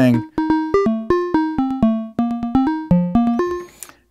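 Moog Labyrinth's sequencer playing a fast run of short synth notes, about six a second, jumping in pitch from note to note. This is its plain sound, with nothing yet patched into the wave folder or filter cutoff. The run stops about three and a half seconds in.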